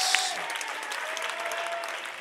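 Church congregation applauding.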